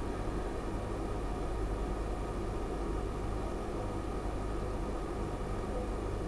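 Dead air on a broadcast line: a steady low hiss with a faint hum and no voice, because the remote guest's microphone is muted.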